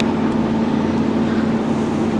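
Steady low hum over an even rushing noise, the background sound of a large hall's air handling.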